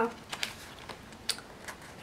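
A few light, irregular clicks and taps of hands with long fingernails handling paper planner pages and sticker sheets.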